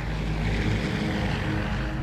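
Propeller aircraft's piston engine drone, steady, over a low rumble.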